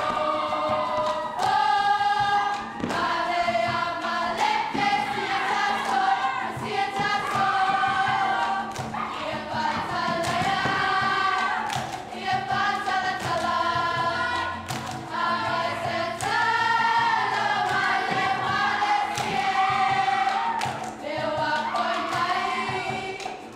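Samoan group song: a seated choir of girls singing together in harmony over strummed guitars, with hand claps now and then.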